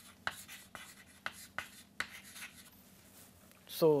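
Chalk writing on a blackboard: a quick series of short taps and scratches as the last word is written, stopping about two and a half seconds in.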